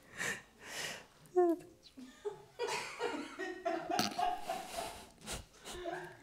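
A woman laughing in short, breathy bursts, with a few brief voiced sounds between them.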